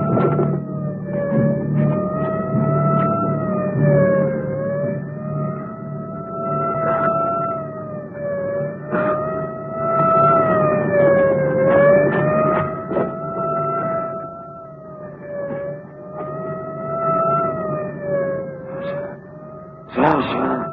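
A police siren wails without a break, its pitch swelling and dipping about every three and a half seconds.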